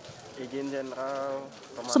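A dove cooing: one low, drawn-out call lasting about a second, near the middle.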